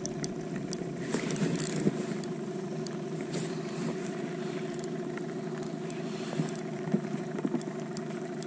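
Boat motor running at a steady hum, with scattered light clicks and knocks over it.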